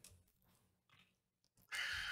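Near silence: room tone. Near the end, a soft, short hiss of breath comes in just before speech resumes.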